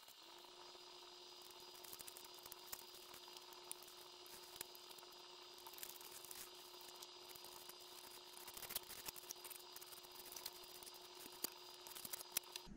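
Faint small clicks and taps of hand tools and aluminium parts being picked up and handled, over a steady low hum.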